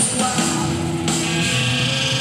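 Live band music led by a strummed guitar, over steady sustained low notes, with higher held tones joining about a second in.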